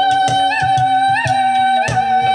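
Live ethnic-styled music from an ensemble playing instruments made of ice: a singer holds one high note, flicking it upward about every 0.7 seconds, over a fast, even percussion beat.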